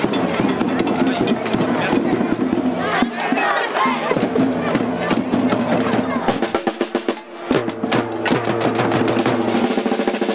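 Many children beating small hand drums and metal pot lids with sticks, a loose, uneven clatter of strikes that grows sharper and more distinct in the second half. Crowd chatter runs underneath.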